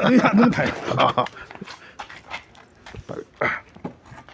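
A man laughing for about a second, then scattered knocks, clatters and footsteps as plastic garden chairs are picked up and moved.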